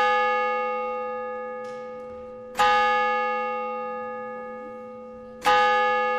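A single bell tolling at one pitch, struck about every three seconds. Each stroke rings on and fades slowly: one just before the start, one about two and a half seconds in, and one near the end.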